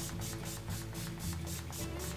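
Pump-action mist bottle of Skindinavia primer spray being pumped rapidly at the face: a quick run of short hissing sprays, about five a second, over background music.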